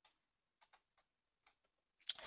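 Near silence: room tone, with a few very faint, brief ticks.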